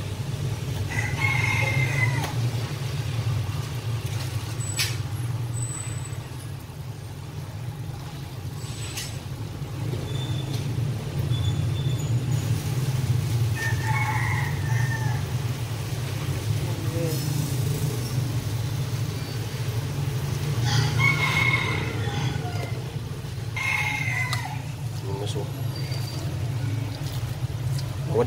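A steady low hum throughout, with a few short pitched calls or voices in the background about four times and a couple of sharp clicks near the start.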